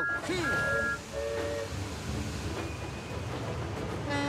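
Animated steam engine setting off, heavily loaded: a low, uneven rumble of the engine and train getting under way. A few short steady tones sound in the first second and a half.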